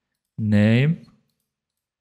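A man's voice making one short voiced sound under a second long, a little after the start: an untranscribed hesitation or half-word. Silence around it.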